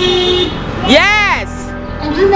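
A car horn held in a long steady honk from a passing car that stops about half a second in. About a second in comes a single loud shout from the crowd, rising then falling in pitch.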